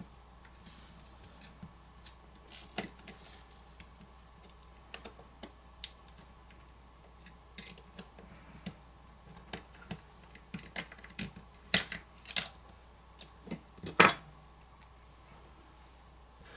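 Metal pry tool and tweezers clicking and scraping against a smartphone's frame and small parts as the charging-port board is pried off its adhesive: irregular light clicks, busier in the second half, the loudest about two seconds before the end.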